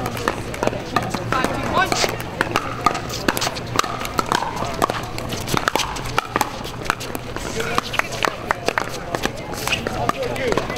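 Pickleball paddles hitting a hard plastic ball in a rally: short sharp pops at irregular intervals, with more pops coming from play on nearby courts. Background voices run throughout.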